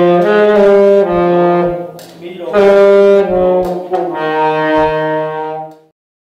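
Saxophone playing a slow exercise of held notes that step from pitch to pitch, with a short break about two seconds in. The playing cuts off abruptly near the end.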